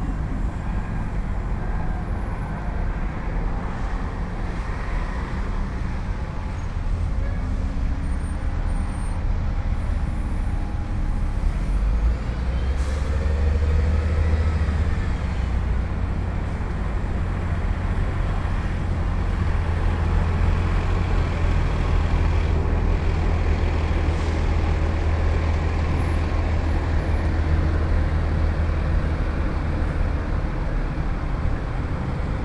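Outdoor road-traffic ambience: buses and other vehicles running, heard as a steady low rumble that grows stronger about halfway through.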